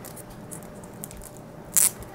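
Plastic card sleeve and toploader being handled, with a few faint clicks and one short, sharp plastic scrape near the end as the card is slid against the plastic.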